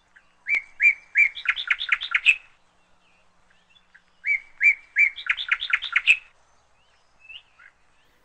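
A songbird singing two similar phrases a couple of seconds apart. Each phrase is a few spaced chirps that break into a quick run of notes.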